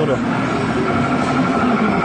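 Claw crane machine's motor whirring steadily as the claw closes on a Charmander plush and lifts it.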